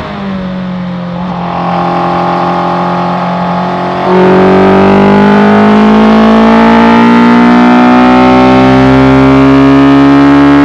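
Suzuki Hayabusa inline-four motorcycle engine in a Raptor R kit car, heard onboard at speed. Its note falls slowly and runs quieter while the car slows off the throttle. About four seconds in it comes back on full throttle, suddenly louder, and the pitch rises steadily as the car accelerates.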